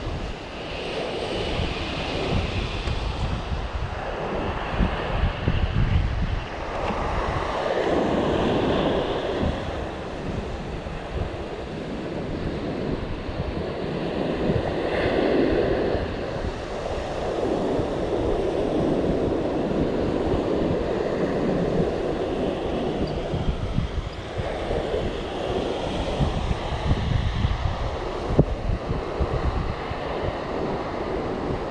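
Strong wind buffeting the microphone over surf breaking on a sandy shore, the gusts rising and falling throughout.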